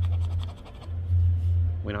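A coin scratching the coating off a lottery scratch-off ticket: a quick run of short, rapid scrapes in the first half second or so, over a steady low hum.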